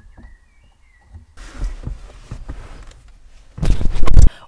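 Hands adjusting a car's exterior side mirror by hand: a few light clicks, then rustling handling noise with small knocks and a loud thump near the end. A bird chirps faintly at first.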